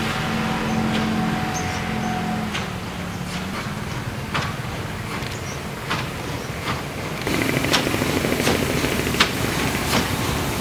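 1928 German-built steam locomotive drawing near at low speed: a low steady rumble, then a louder hiss of steam from about seven seconds in. A passing motorbike's engine is heard in the first few seconds, with sharp clicks scattered throughout.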